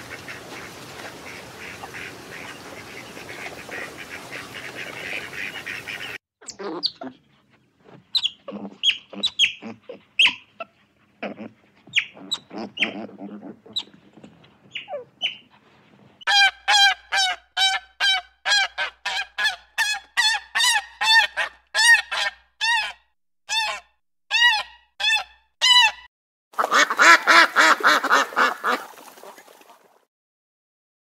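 A run of animal calls. First a dense chorus of whistling ducks, then scattered short calls. Then otters squeak in a regular series of high chirps, about two a second, and near the end a loud burst of ruddy shelduck honking.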